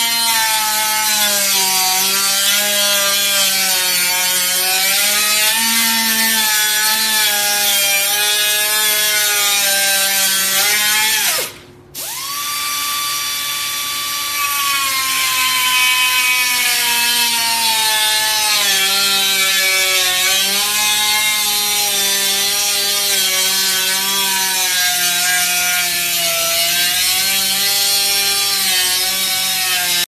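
Pneumatic cut-off tool with a small abrasive disc whining as it cuts through a car's front fender, its pitch wavering as the load changes. A little over a third of the way in it winds down and stops for a moment, then spins back up with a rising whine and carries on cutting.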